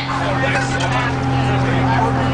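School bus engine droning at a steady pitch, with passengers' chatter over it.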